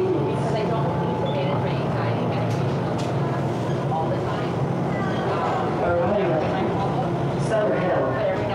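TTC subway train running, a steady low rumble heard from inside the car, with faint voices over it.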